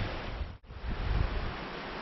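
Steady rushing of a shallow mountain trout stream flowing over rocks, cutting out for an instant about half a second in.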